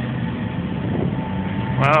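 Steady street traffic noise with a low hum, picked up from a bicycle rolling along a roadside pavement.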